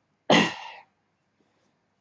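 A woman's single short cough about a third of a second in, loud at first and fading quickly.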